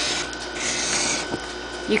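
Marker tip scraping across a brown board as lines are drawn, heard as two strokes of scratchy hiss in the first second or so, then quieter.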